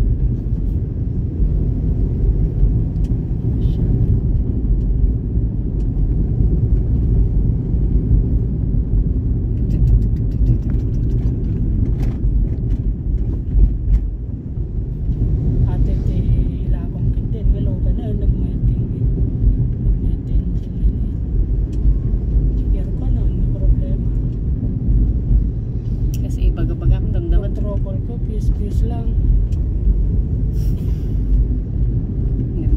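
Steady low rumble of a car's engine and tyres on a paved road, heard from inside the cabin while driving, with a few faint clicks around the middle.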